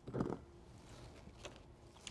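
Mostly quiet, with faint handling sounds as a metal PCIe slot bracket is set down and a network card picked up: one short soft sound near the start and a faint tick about one and a half seconds in.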